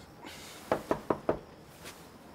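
Knuckles knocking on a wooden panel door: four quick, evenly spaced raps about a second in, then a fainter tap near the end.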